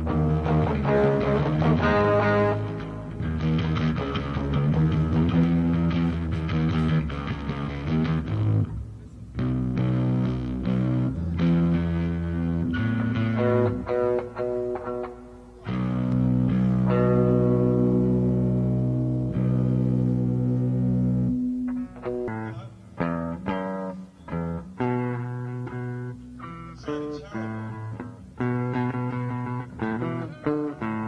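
Rock music on electric guitar and bass guitar, with a distorted tone and a strong bass line. It is dense for about the first eight seconds, then moves to separate held notes and chords with short breaks, getting choppier near the end.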